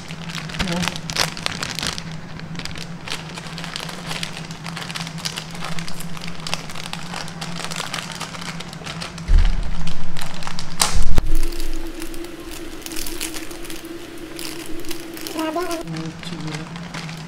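Plastic wrapper of an Oreo ice cream sandwich being crinkled and torn open by hand, with a continual crackle. A low rumbling bump about nine seconds in is the loudest sound, under a steady background hum that steps up in pitch about eleven seconds in.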